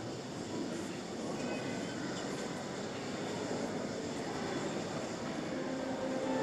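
Steady background hubbub of a church congregation, with shuffling and low murmuring but no clear words. Music starts to come in right at the end.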